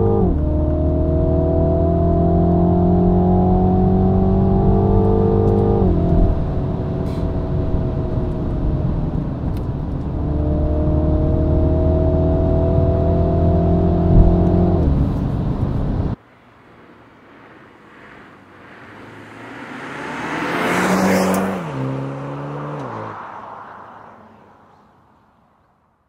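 Mini John Cooper Works 2.0-litre turbocharged four-cylinder heard from inside the cabin while accelerating in gear. The engine note climbs through one long pull, eases off about six seconds in, climbs again and drops away near fifteen seconds; part of this cabin sound is played through the car's speakers. After a sudden cut, a car passes on the road outside, swelling to a peak and then falling in pitch as it goes away.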